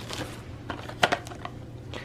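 Rustling and light clicks from a plastic blister pack and cardboard being handled, with one sharper click about a second in.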